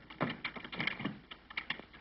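An irregular run of light knocks and clatters, several a second, as wooden furniture and a board are shoved and handled on a floor.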